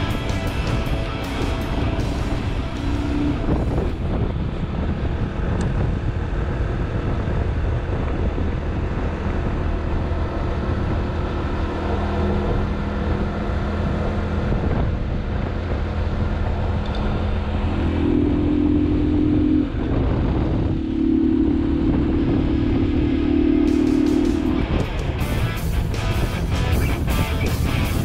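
Motorcycle engine and wind noise at steady road speed, mixed with rock-and-roll background music.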